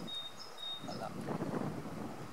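Quiet countryside ambience with a bird's thin, steady high whistle held for most of the first second.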